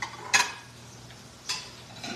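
Metal spoon knocking against a stainless steel skillet while stirring: two sharp clinks, a louder one about a third of a second in and a lighter one about a second and a half in.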